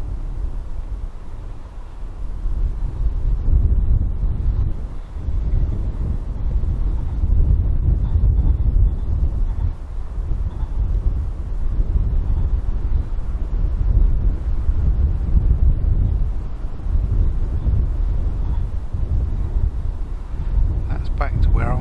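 Wind buffeting the microphone: a gusting low rumble that swells and fades every second or two.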